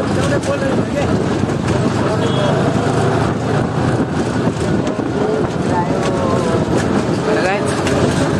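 A John Deere tractor's diesel engine running steadily while driving, heard from aboard the tractor, with people's voices talking over the noise.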